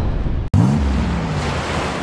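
Wind rumbling on the microphone outdoors. After a sharp cut about half a second in, a louder crashing-wave surf sound starts, with a low tone that slides up and then holds.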